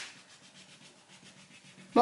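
Faint, quick, even rubbing of a wax crayon on paper, with a small click as the crayon first touches the sheet.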